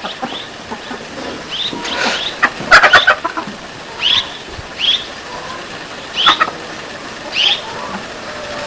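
Short, high-pitched animal chirps with a falling pitch, repeated about once a second and often in pairs, with one louder, fuller call about three seconds in.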